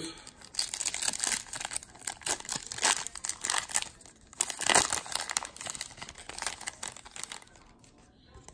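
Foil wrapper of a trading-card pack being torn open and crinkled: a run of rustling, crackling tears, loudest about three and five seconds in, fading away near the end.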